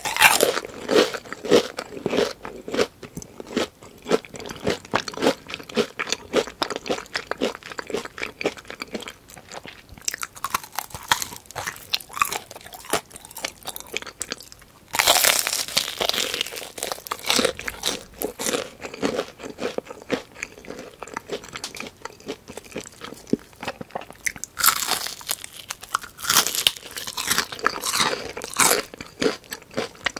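Close-miked biting and chewing of crispy-coated fried chicken (BBQ Golden Olive): loud crunches at the start, around ten and fifteen seconds in, and again in the last few seconds, with steady crackly chewing between.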